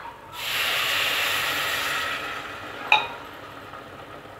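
Water poured into hot fried masala in a steel pressure cooker, sizzling with a loud hiss the moment it hits and fading over the next two seconds. A single metal clink near three seconds in.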